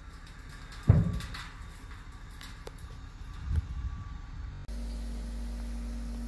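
Dump truck unloading road base gravel: a sharp, heavy bang about a second in and a smaller thud a few seconds later, then a steady low hum.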